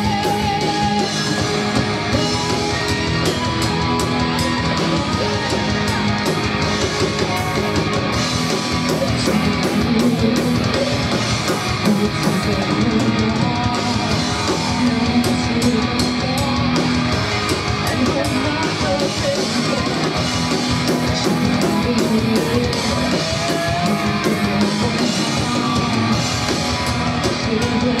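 A metal band playing live: electric guitars and a drum kit with a woman singing into a microphone, steady and loud, heard from among the audience.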